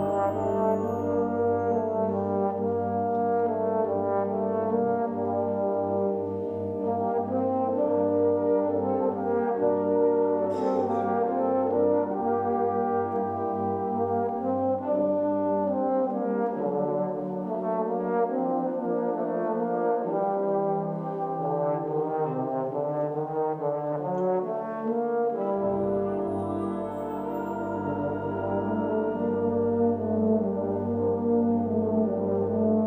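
Brass band playing lyrical music, with a solo baritone horn carrying the melody over held chords from the band. The low bass drops out a little past halfway and comes back in near the end.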